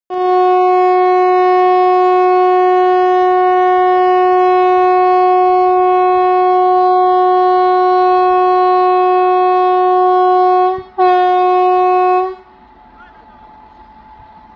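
Electric locomotive air horn sounding one long steady single-note blast of about ten seconds, breaking off briefly, then one short blast of about a second before it stops.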